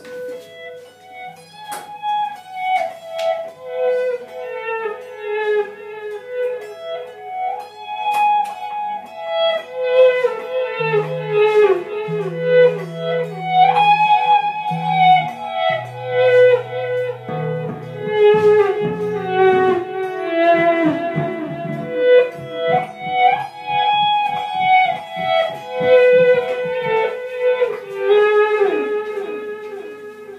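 Instrumental band music: a repeating lead melody of picked notes, with an electric bass guitar coming in about eleven seconds in.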